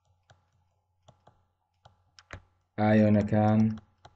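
About six faint, irregular clicks of a stylus tapping on a pen tablet while writing, then a voice speaks for about a second near the end.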